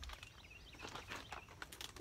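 Scattered rustling and clicking of a plastic garden-soil bag being handled and set down, with a few faint bird chirps in the first second.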